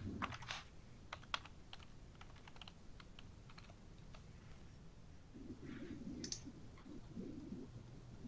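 Faint typing on a computer keyboard: irregular keystrokes, quick in the first half and sparser after, with one sharper click a little after six seconds.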